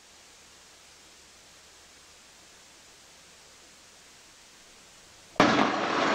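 Faint steady hiss with no engine drone or voice in it. About five and a half seconds in, a sudden loud rush of noise begins.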